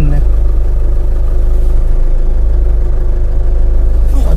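Car engine running steadily with a low hum, heard from inside the car's cabin.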